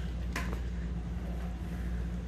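A steady low hum, with a single short click about half a second in.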